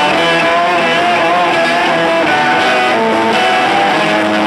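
Live electric guitar lead, amplified and loud, playing long held notes that shift and bend in pitch, with bass guitar underneath.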